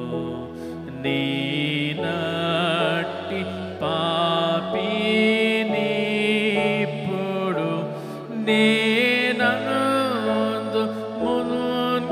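A man singing a slow Telugu Christian hymn in a chant-like style, with long held, wavering notes over sustained accompaniment chords.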